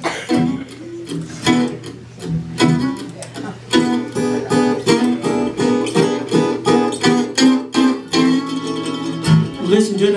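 An acoustic guitar and a mandolin play an instrumental blues passage between vocal lines. The picked notes are sparse at first and settle into a steady run of quick repeated notes about four seconds in.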